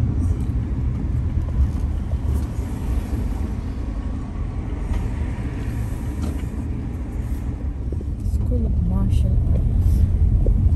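A car driving, with a steady low rumble of engine and road noise. A brief sliding, pitched sound comes near the end.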